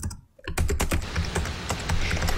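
Sound effect of a TV news segment title: a rapid run of sharp clicks over a low bass bed, starting about half a second in after a brief gap.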